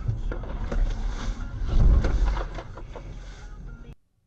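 Dashcam recording from a moving car: a heavy low road-and-engine rumble with a series of knocks and rattles, loudest about two seconds in, then fading and cutting off abruptly just before the end.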